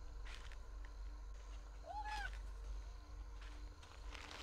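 A faint, short cat-like call about two seconds in that rises and then falls in pitch, with a weaker echo of it just before three seconds, over a low steady hum.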